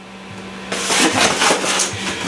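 Kitchen handling noise: a quick run of crackly rustling sounds starting less than a second in, over a steady low hum.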